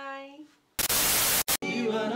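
A voice trails off, then a burst of TV-style static hiss just under a second long, with a short blip after it, as an edit transition. It cuts straight into an acoustic guitar being strummed, with singing.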